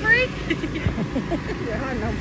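Voices of people and children, with a short high-pitched call right at the start, over a steady low motor hum from the air blowers that keep inflatable bounce houses up.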